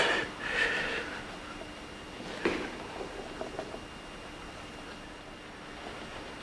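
Quiet room tone with paint being dabbed onto a stretched canvas: one sharper tap about two and a half seconds in, then a few light taps.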